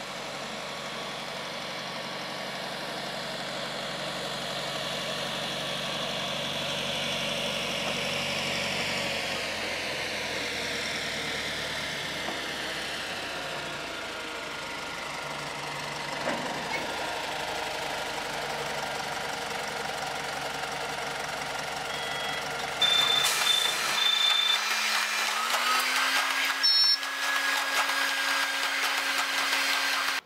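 A small diesel locomotive running as it approaches with its passenger carriages, its engine note growing gradually louder. In the last several seconds it is louder and closer, with high-pitched squealing tones over the engine.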